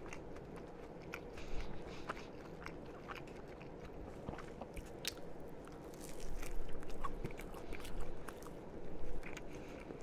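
Close-miked chewing of a toasted sandwich, with small crunches. About six seconds in a fresh bite is taken and the chewing grows louder.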